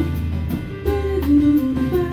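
Live jazz: a woman singing a melodic line over piano/keyboards and drum kit, with a sustained bass underneath and light cymbal strokes.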